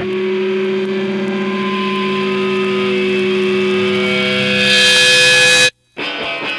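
Sustained electric-guitar feedback and held notes from a hardcore punk record, swelling into a wash of noise and cutting off suddenly near the end.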